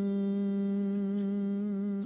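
Unaccompanied male dengbêj voice holding one long, steady sung note with a slight waver, closing a phrase and breaking off right at the end.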